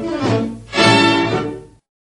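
Closing bars of a 1952 shidaiqu record with string orchestra accompaniment: a chord swells, then fades out and stops shortly before the end.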